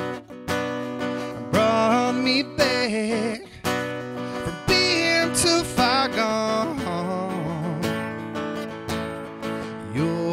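A man singing a country ballad with a wavering, held voice over a strummed acoustic guitar.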